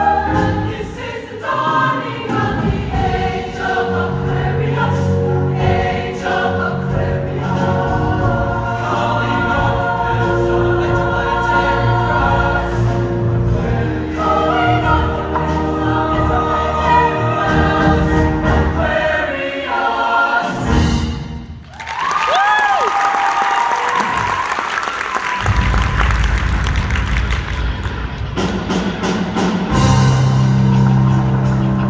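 Show choir singing in harmony over a recorded accompaniment. About two-thirds of the way through, the singing stops after a brief drop, and a burst of audience cheering and applause rises over the continuing low accompaniment.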